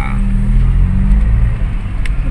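Steady low rumble of a car's engine and road noise heard from inside the moving car's cabin.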